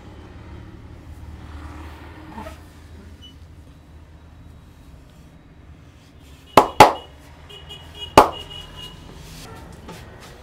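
Three sharp cracks from a skin-cracking back massage as the barber's hands grip and pull the skin and muscle of a bare back. The first two come in quick succession about two-thirds of the way in, and the third follows about a second and a half later.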